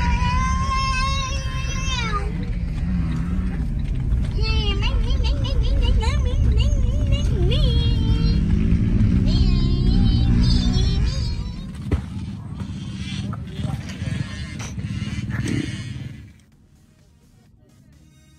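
Low rumble of a car driving, heard from inside the cabin, with a wavering sung melody over it. The rumble fades about 11 seconds in, and the sound drops to a faint hum about 16 seconds in.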